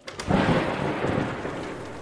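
Thunderclap sound effect with rain: a sudden loud crack and rumble a fraction of a second in that slowly dies away, with steady rain underneath.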